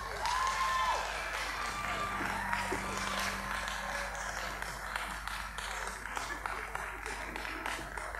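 Audience applauding at the end of a choir's song, with a brief whoop from the crowd about half a second in. A low keyboard note from the final chord dies away during the first few seconds.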